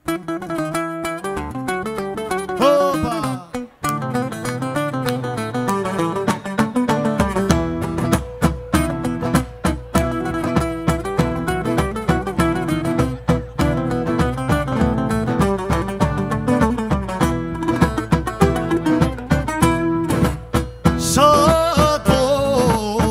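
Cretan folk band playing an instrumental introduction: lyra melody over strummed laouta, with a steady daouli drum beat joining about seven seconds in.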